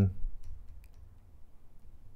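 A few faint clicks and taps of a stylus on a pen tablet while letters are handwritten.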